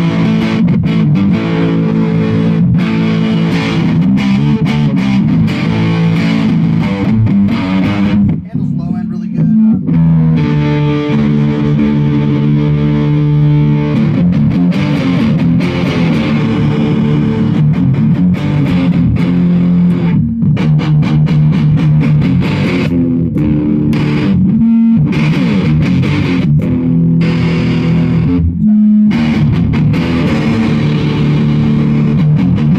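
Electric guitar played through a handmade Black Sheep fuzz pedal, a clone of the Roland Bee Baa, into a clean all-tube amp: thick fuzzed notes and chords, many held long and sustaining, with a short break about eight seconds in.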